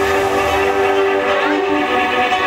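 Live band playing through a PA: held, amplified chords on electric guitars and keyboard, changing pitch every half second or so.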